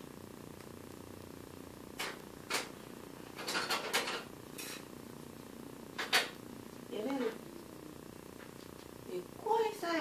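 A handful of sharp clicks and knocks from handling an electric stove and the cookware on it: several in quick succession about three and a half to four seconds in, and the loudest about six seconds in. Under them runs a steady low hum.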